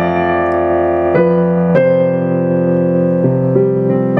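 Digital piano played slowly in sustained chords, each struck and left to ring until the next, with four chord changes.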